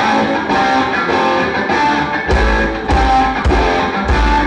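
Live rock band opening a song: an electric guitar starts strumming chords in a steady rhythm, and a little over two seconds in a heavy low end joins as the rest of the band comes in.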